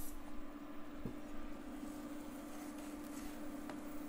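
Quiet room tone with a steady low hum, and a faint tap about a second in.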